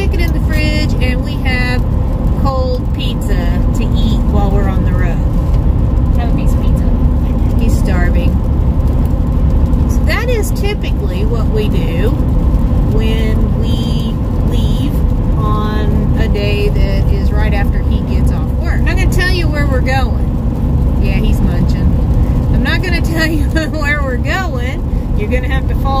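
A woman talking over the steady road and engine noise inside the cab of a moving pickup truck.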